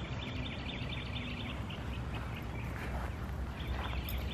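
Outdoor ambience of birds chirping over a steady low hum, the chirping busiest in the first second or so.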